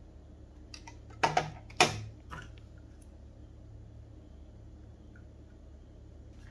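A white plastic Wi-Fi router being handled: a few light clicks, then two sharper knocks about one and two seconds in, and a few faint taps after. A steady low hum runs underneath.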